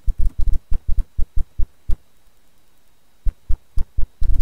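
Marker pen strokes on a drawing surface: a quick run of about a dozen short, sharp taps, a pause of about a second, then another run starting near the end.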